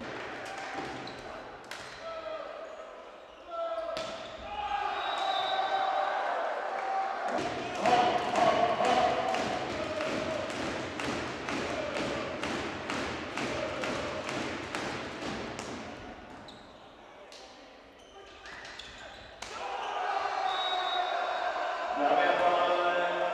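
Volleyball spectators in a sports hall: voices chanting, then steady rhythmic clapping at about three claps a second for several seconds, with chanting again near the end.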